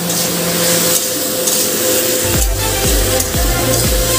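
Potato and drumstick pieces sizzling in oil in a kadai as they are stirred with a spatula. About two seconds in, background music with a steady beat comes in over the sizzle.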